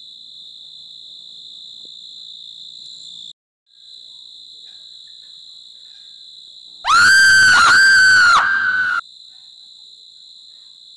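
Crickets chirring steadily, with a brief dropout a little after three seconds in. About seven seconds in, a loud, high-pitched shriek in three swooping pulses lasts about two seconds, then cuts off abruptly.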